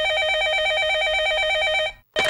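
Electronic landline telephone ringing: a fast, warbling two-pitch trill, one ring lasting about two seconds that stops near the end.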